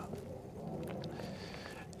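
Faint, steady rolling noise from a folding e-bike moving slowly on pavement, with a few light ticks.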